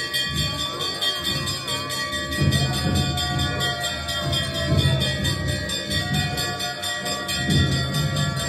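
Brass temple bells ringing without pause for aarti: a large hanging bell struck in rapid, even strokes, its tones ringing on. Uneven low thuds sound underneath.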